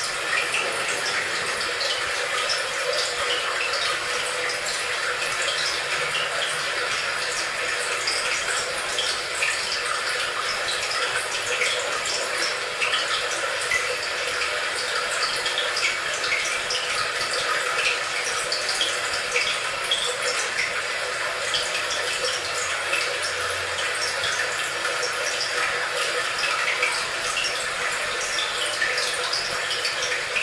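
Steady noise of running, splashing water with many small drip-like ticks throughout.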